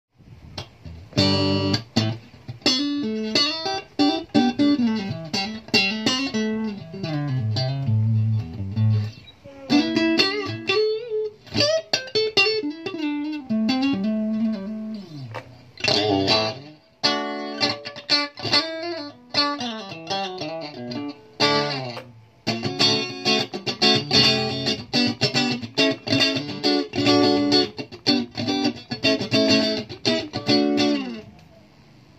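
Electric guitar played through a buffer pedal into an amplifier: picked chords and falling single-note runs, then strummed chords in a steady rhythm for the last third.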